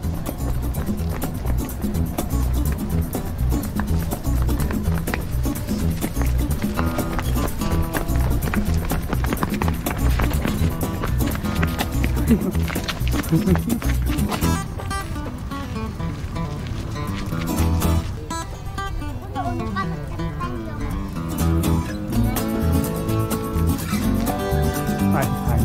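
Background music with a steady low beat, and voices.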